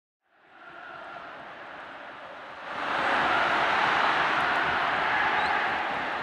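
A steady rushing noise fades in, then steps up much louder about three seconds in and holds.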